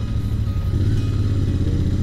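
Royal Enfield Interceptor 650's parallel-twin engine running at low revs as the motorcycle pulls away slowly, a steady low exhaust note.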